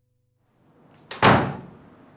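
A door shut hard with a single loud bang a little over a second in, the sound dying away over about half a second.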